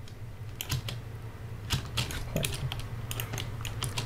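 Irregular clicks of a computer keyboard and mouse, a dozen or so sharp taps spread unevenly through the moment.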